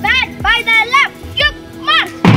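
A boy's voice shouting drawn-out drill commands to a children's marching band: four calls that rise and fall in pitch, with short gaps between them, while the drums are silent.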